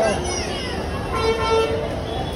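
A vehicle horn gives one short steady toot about a second in, over a constant background of crowd voices and street noise.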